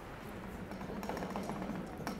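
Busy city street: steady traffic noise with a continuous low engine hum and a few faint light clicks.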